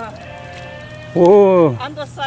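A person's single drawn-out exclamation about a second in, falling in pitch, after a quieter first second.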